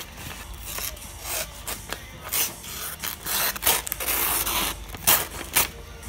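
Svord Peasant friction-folder knife blade slicing through sheets of paper in a series of rasping, scraping strokes, with paper rustling and handling between the cuts.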